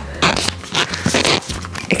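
Metal front zipper on a sports bra being worked up by hand: a run of short, irregular rasps mixed with fabric rustling.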